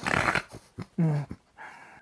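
A deep snort from a sleeping old woman, her breath hitching in her sleep: a rasping breath, then a short throaty grunt dropping in pitch about a second in.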